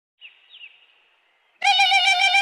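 Two short, faint falling bird-like chirps, then about one and a half seconds in a loud held tone with a bright, buzzy edge starts up: the opening sound effects of a DJ remix track.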